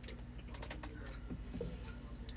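Faint light clicks and rustling of clothing being handled, over a low steady hum.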